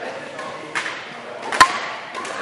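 Badminton racket striking a shuttlecock with one sharp crack about one and a half seconds in, among fainter hits and voices in the hall.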